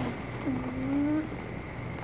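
Domestic cat meowing: a short call falling in pitch at the start, then one drawn-out low meow beginning about half a second in.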